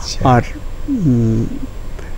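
Speech only: an elderly man's voice says a short word, then draws out one long hesitant vowel that falls in pitch and then holds.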